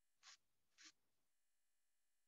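Near silence, broken by two faint, brief hissy sounds about a third of a second and nearly a second in.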